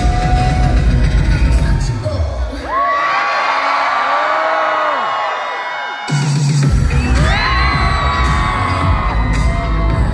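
Live K-pop dance track played loud over a concert PA, recorded from the audience, with a heavy bass beat. About two seconds in the bass drops out for roughly four seconds, leaving high gliding cries and melody over the music. The beat then slams back in.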